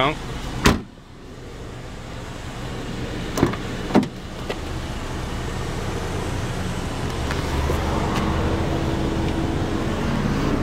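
A 2012 Honda Accord's trunk lid slams shut once, the loudest sound, under a second in. About three and four seconds in come two sharp clicks of a rear door latch opening. A low steady rumble grows louder through the second half.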